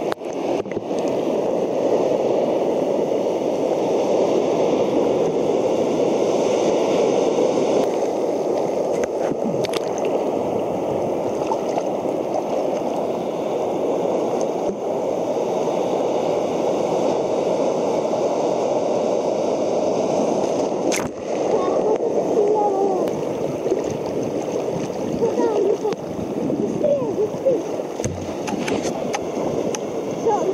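Sea surf sloshing and gurgling against a camera held at the waterline, a steady, muffled churn of breaking waves and foam, with a few sharp knocks and more bubbly gurgling in the last several seconds.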